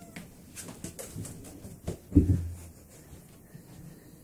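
A few light taps and knocks, then one heavy thump a little after two seconds in, with a short low rumble after it.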